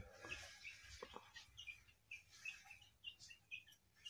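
A caged songbird giving faint, short chirps, a few a second, with one brief lower sliding note about a second in: a young bird practising toward the rapid 'ngebren' trill.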